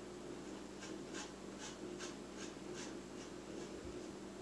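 Faint, soft ticking of a quartz crystal pendulum's metal chain as it swings, about two to three light ticks a second that fade near the end, over a low steady hum.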